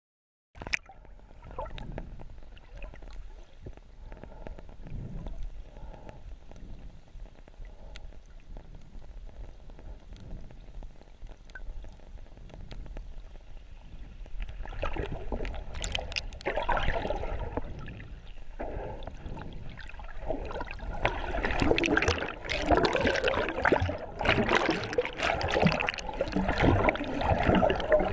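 Water splashing and gurgling from swimming, quiet and in soft swells at first, then growing busier and louder from about halfway.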